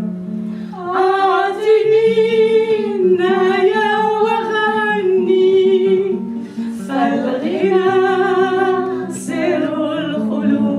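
Women singing a song together in long held phrases to a classical guitar played by the lead singer, with a short break between two phrases about two-thirds of the way through.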